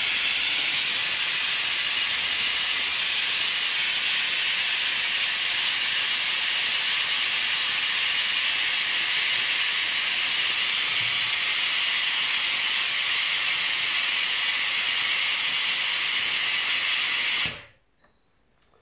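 Compressed air hissing steadily through a pneumatic vacuum brake bleeder as it sucks fluid and air out of an opened brake caliper bleed screw. The hiss cuts off suddenly near the end.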